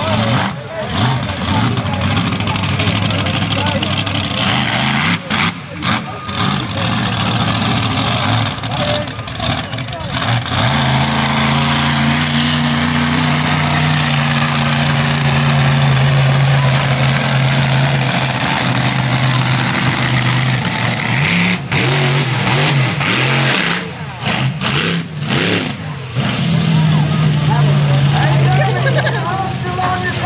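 Monster truck engine running loud at high revs, holding long steady pulls around the middle and near the end, with the throttle dropping off briefly several times in between.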